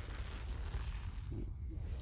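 Faint outdoor background with a steady low rumble on the microphone; no distinct event stands out.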